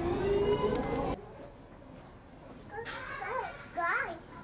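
Visitors talking, children among them. A louder stretch of chatter cuts off abruptly about a second in, and near the end a child's high voice rises and falls.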